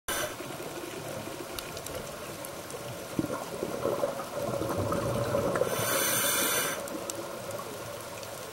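Scuba diver breathing through a regulator underwater, heard through the camera housing: a steady bubbling, water-filled noise, with a loud hiss lasting about a second near the end.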